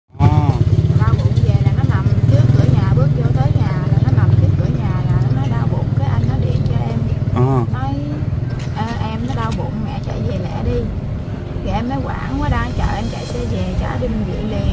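Steady low engine rumble of a nearby motor vehicle, heaviest in the first four or five seconds and lighter after, under a woman talking close to the microphone.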